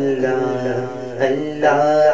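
A man singing a hamd (an Urdu devotional song praising Allah), holding long, wavering melismatic notes. A fresh phrase starts a little past the middle.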